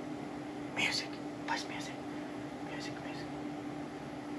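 A few short whispered or breathy bits of voice, soft and hissy, over a steady low hum.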